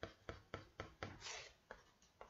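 Pencil scratching on paper in quick short strokes, about four a second, with one slightly longer stroke a little past the middle, as fur lines are sketched in.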